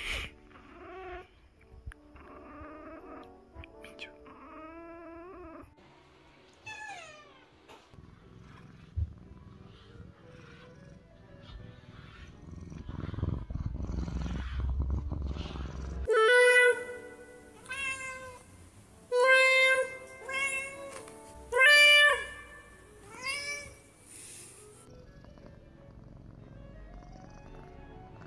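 Tabby point Siamese cat purring with a low rumble for several seconds, then meowing loudly about six times in quick succession. Faint background music plays underneath.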